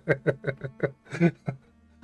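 A man laughing, a quick run of short 'ha' bursts for about a second and a half that then stops.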